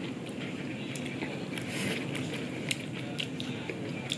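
A person chewing tender boiled chicken and rice close to the microphone, with scattered small wet mouth clicks and smacks.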